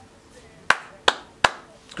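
Three sharp hand claps, a little under half a second apart.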